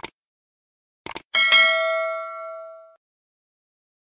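Subscribe-button animation sound effects: a short click, a quick double click about a second in, then a notification bell ding with several overtones that rings out and fades over about a second and a half.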